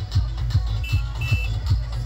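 Loud DJ dance music from a large sound system, with a heavy bass kick pounding about two and a half times a second. Two short high beeps sound about a second in.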